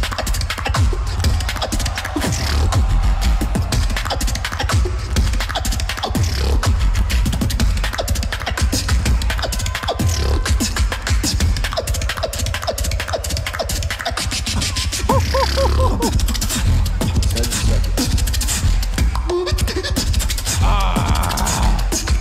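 A beatboxer performing into a handheld microphone: fast vocal drum patterns of kicks, snares and hi-hat clicks over a heavy, continuous bass. A few short pitched vocal sounds come in about two-thirds of the way through and again near the end.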